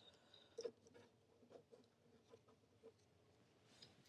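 Near silence with a few faint taps and light handling noise, the clearest a little over half a second in: a paper swatch card being picked up off a plastic sheet and moved on a wooden table.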